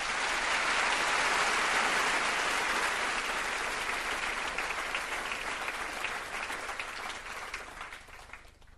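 Theatre audience applauding, starting suddenly as the music ends, loudest in the first couple of seconds, then slowly thinning out to scattered claps near the end.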